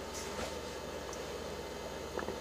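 HHO electrolysis generator running: a steady low fizzing hiss of gas being produced, over a faint electrical buzz, with a couple of faint ticks.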